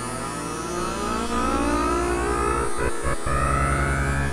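Synthesizer music from a virtual Casio CZ-style synth in a microtonal tuning (12 notes of 91-EDO): a steady low drone under dense sustained tones, with pitches gliding upward like a siren. The low drone breaks off briefly a few times about three seconds in.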